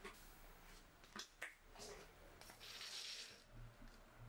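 Quiet handling sounds from dried branches and a cotton kitchen cloth: a few sharp clicks in the first second and a half, then a short rustle about two and a half seconds in as the cloth is spread out.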